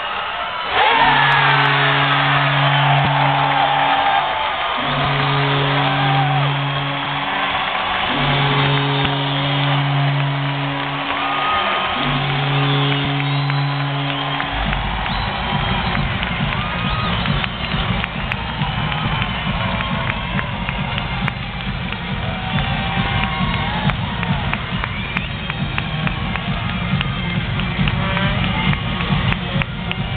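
Hockey arena crowd erupting in cheers after a goal, while the goal horn sounds four long, low blasts with short gaps. The horn gives way to loud arena music with a steady beat over the crowd.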